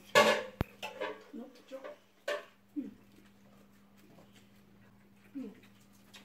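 A few short voice sounds and small clicks from people eating at a table, the first burst right at the start the loudest, over a faint steady hum.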